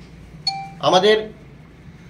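A short electronic chime, one brief ding of several steady pitches, about half a second in, followed by a brief burst of a man's speech.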